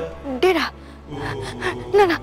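A woman's short frightened gasp and brief vocal sounds over dramatic background music, with a low steady drone coming in about a second in.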